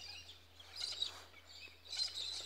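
Wild birds calling faintly, with scratchy chirps that come in clusters about a second in and again near the end.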